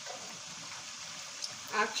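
Chicken wings frying in a pan of hot oil: a steady sizzle.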